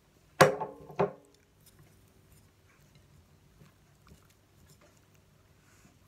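Two sharp clinks with a brief ring, about half a second apart, as tableware is knocked together during the meal; faint chewing follows.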